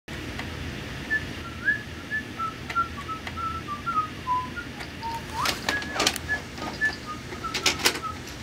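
Plastic clicks and knocks of a VHS cassette being handled and pushed into a VCR, heard over a steady hiss. Through it runs a string of short, high chirping notes that mostly step downward in pitch.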